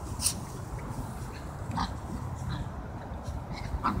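Two small dogs play-fighting, with a few short dog vocalisations spread across the rough-and-tumble play.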